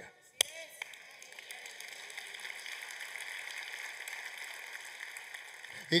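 A congregation applauding, steady and fairly quiet, after a single sharp click about half a second in.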